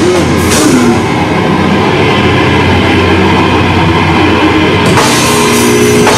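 Heavy metal band playing live and loud: distorted electric guitars, bass and drum kit. A cymbal crash about five seconds in brings the bright cymbal wash back in.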